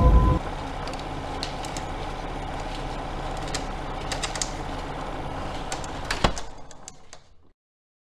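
The tail of a loud music hit dies away, then a steady low hum with scattered faint clicks and ticks runs under it. A louder click comes about six seconds in, and the hum fades out a second later.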